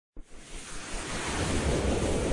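Whoosh sound effect of an animated logo intro: a rushing noise that starts abruptly just after the beginning and swells steadily louder.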